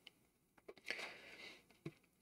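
Near silence: room tone with a few faint clicks and a brief soft rustle about a second in.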